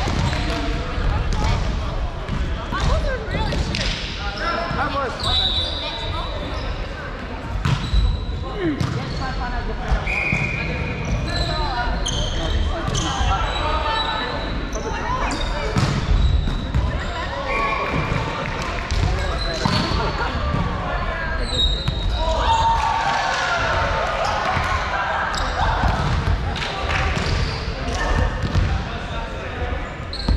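Volleyballs being hit and bouncing on a wooden sports-hall floor during team warm-up, with frequent sharp strikes, short high squeaks of shoes on the court, and indistinct chatter of players in a large hall.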